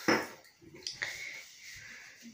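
A sharp knock at the start, then two lighter clinks about a second in, as hard objects are handled close to the microphone.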